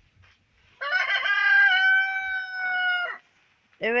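A rooster crowing once: a single loud crow about two seconds long, starting about a second in, with a held, slightly falling tail.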